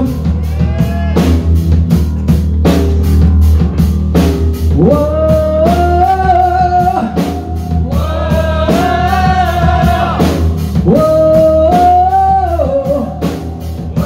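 Heavy metal band playing live: a singer holding long notes in several sung phrases over electric guitar, bass and a drum kit keeping a steady cymbal beat.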